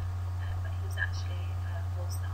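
A steady low hum under faint whispered speech, with a single small click about a second in.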